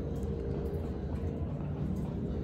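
Steady low background rumble with a faint steady hum above it.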